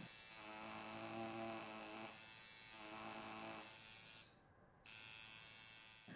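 Coil tattoo machine buzzing steadily as it needles rawhide. It cuts out for about half a second after four seconds, then buzzes again.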